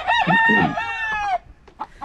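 A gamecock crowing once: a single drawn-out crow that ends about a second and a half in.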